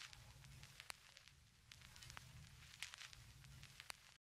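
Near silence after the music has ended: faint, irregular crackles and clicks over a low rumble, like the surface noise of a vinyl record.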